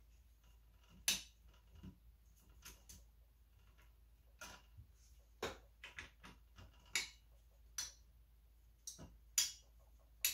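Screwdriver turning the spring-loaded mounting screws of a stock AMD Wraith Stealth CPU cooler on a motherboard. It makes irregular sharp clicks and taps, the loudest about a second in and near the end.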